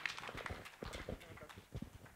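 Handling noise from a live handheld microphone: scattered soft knocks and rubs as the mic is lowered and passed from hand to hand, thinning out toward the end.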